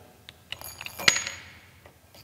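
Small brass ring launched up the iron core of a Thomson jumping-ring coil: a sharp metallic clink about a second in, with a brief high ringing around it.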